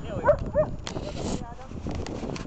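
A dog gives two short, high yelps in quick succession, followed by a brief hiss.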